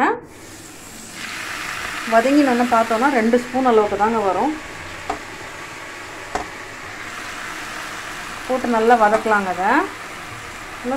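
Oil sizzling in a frying pan: a steady hiss that starts about a second in and holds. A voice speaks briefly twice over it.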